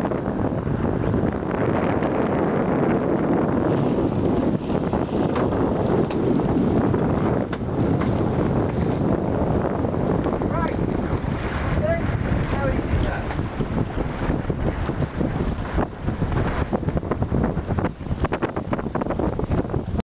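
Wind buffeting the microphone over the rush of water along the hull of a sailing yacht under sail. A few faint short chirps come about halfway through.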